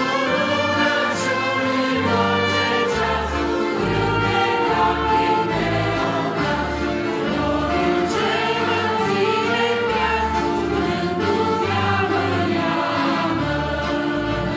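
Romanian Christian hymn sung live by a small ensemble: several voices singing together in harmony, accompanied by accordion, saxophones and keyboard, with a bass line stepping through chord changes about once a second.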